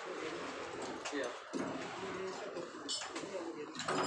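Indistinct voices talking in the background over steady outdoor noise.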